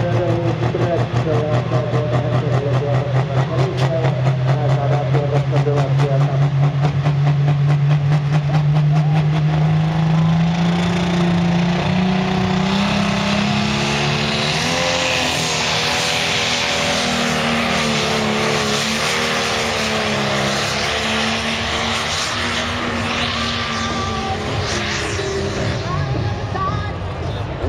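Competition pulling tractor's diesel engine running flat out under load as it drags the weight sled. Its pitch climbs steadily over the first ten seconds or so, then holds high and wavers for the rest of the pull.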